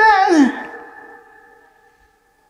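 Male Qur'an reciter's voice ending a chanted phrase: a drawn-out ornamented note that slides down in pitch about half a second in, then an echo that fades away.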